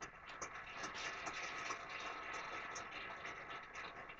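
A crowd of wedding guests applauding: a steady, dense patter of many hands clapping.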